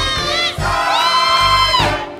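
Gospel choir singing with instruments, a voice holding a long high note from about half a second in until near the end. The congregation shouts and cheers along.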